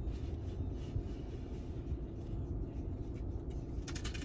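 Steady low rumble of vehicle noise heard inside a car, with a few faint clicks from the rattan bag being handled.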